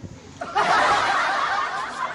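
Loud laughter from several voices at once, breaking out about half a second in.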